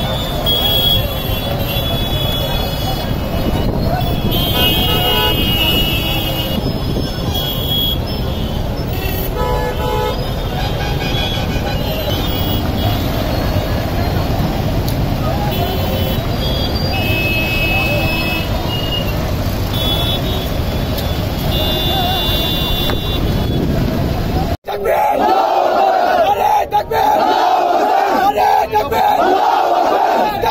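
Busy street traffic in a jam, engines running with many vehicle horns honking in short toots. About 25 s in it cuts to a crowd of protesters shouting slogans together, louder than the traffic.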